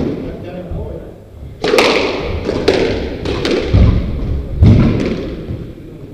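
Squash rally: the ball cracking off rackets and thudding against the court walls, a string of sharp hits about two a second starting under two seconds in, with two heavier thuds near the end.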